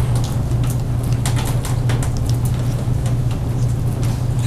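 A steady low hum fills the room sound, with scattered faint clicks and light rustles over it.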